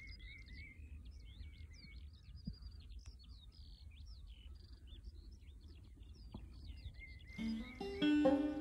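Many small birds chirping in quick, rising and falling calls over a faint low outdoor rumble. Near the end, a banjo starts picking.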